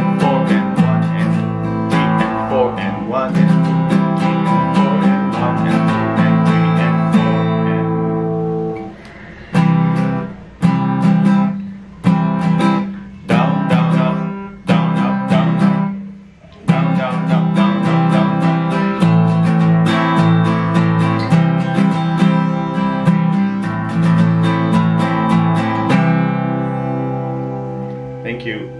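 Steel-string acoustic guitar strummed steadily through chord changes. About nine seconds in, it changes to a run of single chords struck about every second and a half, each left to ring and fade. Steady strumming then resumes until it thins out near the end.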